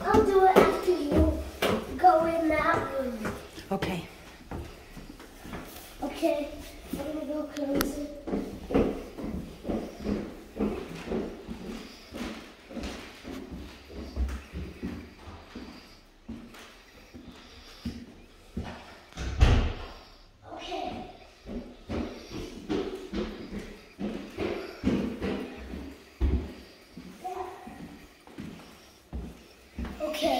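Footsteps climbing carpeted stairs and walking through rooms, with indistinct voices, and one loud thud like a door slam about twenty seconds in.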